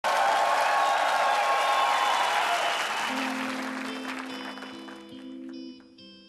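Audience applause over the last of a song, fading away over the first few seconds, leaving a few held instrument notes ringing on.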